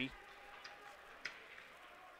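Faint ice-hockey rink sound during play, with two sharp clicks of stick on puck about half a second apart.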